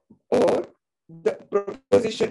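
Speech only: an elderly woman's voice, heard over a video call, speaking in short phrases with a brief pause a little before halfway.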